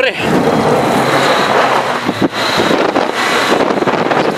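A car pulling away fast over a rough dirt track, heard from inside the cabin: loud, steady engine and tyre-on-gravel noise.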